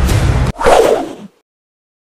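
Background music cuts off abruptly about half a second in and is followed by a single whoosh sound effect that swells and fades away within a second.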